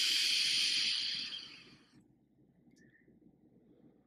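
A long draw on a vape: air hissing through the Sense Blazer Mini tank's airflow as the coil fires, fading out about a second and a half in.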